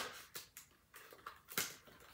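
A few sharp plastic clicks and rustles as the clear plastic topper of a small wax-melt tin is handled: one right at the start, softer ones just after, and another about one and a half seconds in.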